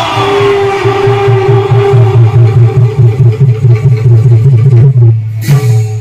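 Live Bhaona accompaniment music: a fast, rolling low drum beat under a held note, with a sharp strike about five and a half seconds in.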